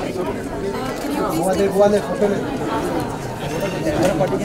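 Crowd chatter: several people talking over one another.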